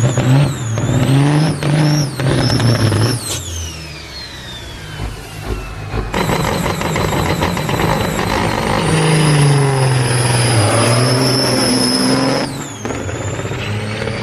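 Big-rig diesel engine of a long-nose semi-truck being revved hard, again and again, during a burnout. The revs then fall away with a long descending whine. After that the truck runs under load with a high steady whistle over the engine.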